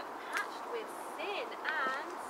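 Birds calling from the surrounding trees: a scatter of short whistled notes and arched, chirping calls, with the most prominent call near the end.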